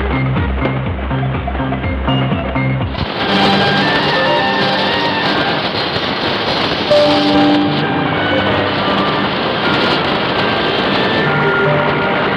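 Shortwave broadcast music through a Degen 1103 portable receiver's speaker, tuned to Deutsches Radio 700 on 3985 kHz. About three seconds in, the radio is tuned off the station: the music gives way to hissy static with whistling tones and faint snatches of music as the dial moves up toward 3995 kHz.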